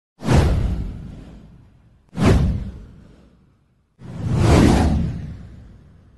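Three whoosh sound effects for an animated title card, about two seconds apart, each rushing in with a deep rumble underneath and fading away over a second or so; the third swells in more gradually and lasts longest.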